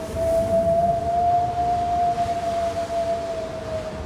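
Eerie horror-film drone: one long held tone that swells slightly in pitch and loudness and then sinks, over a low rumble.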